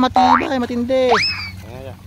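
A man's wordless drawn-out calls urging on water buffalo hauling loads through mud, with two sharp upward-sliding whoops, the second rising to a high held note about a second in.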